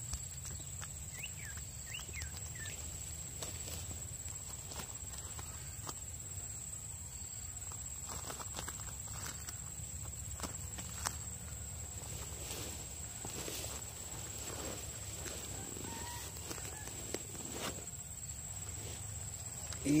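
Quiet outdoor ambience: a steady low rumble, a constant faint high-pitched whine, and scattered small clicks and rustles.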